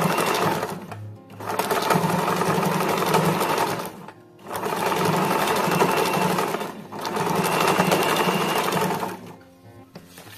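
Electric domestic sewing machine stitching down folded fabric strips, running in bursts of two to three seconds with brief pauses between, and stopping about nine seconds in.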